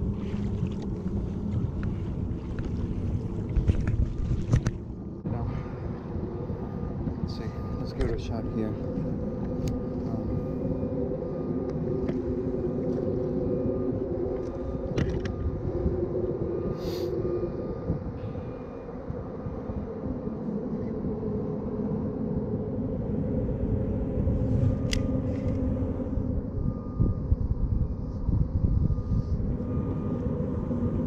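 A steady low rumble with a wavering engine-like drone, typical of a motorboat running on open water, mixed with wind on the microphone and a few light clicks.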